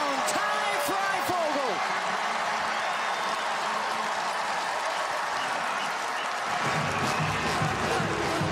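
Stadium crowd cheering and clapping after a touchdown, with yells at the start. Music comes in low underneath near the end.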